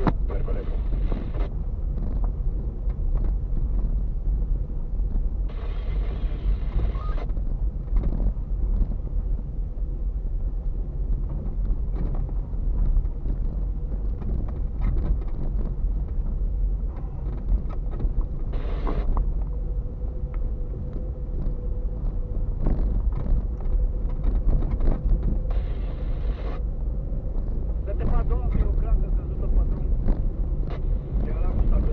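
Car cabin noise while driving slowly over an unpaved, potholed dirt road: a steady low rumble of tyres and engine, broken by irregular knocks and rattles as the car goes over bumps.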